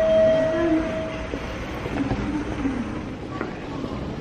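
A train running, with a steady high tone over about the first second.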